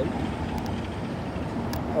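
Steady low rumble of background noise, with a few faint clicks about halfway through and again near the end.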